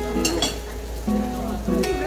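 Background music: strummed acoustic guitar, chords held and changed every half second or so.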